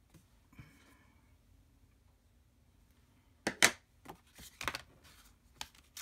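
Paper cards being handled on a cutting mat: quiet for the first few seconds, then one loud sharp slap and rustle of card stock about three and a half seconds in, followed by a few lighter taps and rustles.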